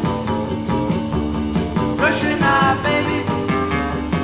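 Early-1960s Brazilian rock and roll band recording playing: a full band with a steady beat, with a melodic line bending in pitch about two seconds in.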